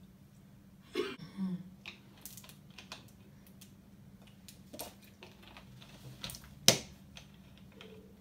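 Plastic water bottle crackling and clicking in the hand as it is drunk from, a scatter of small sharp clicks with one louder knock near the end, over a faint steady hum.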